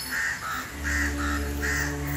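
A bird calls three times, about two-thirds of a second apart, each call a short pair of notes stepping down in pitch. A steady low drone of background music comes in under the calls about a third of the way through.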